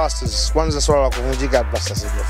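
Hip hop track with a rapped vocal over a steady bass line.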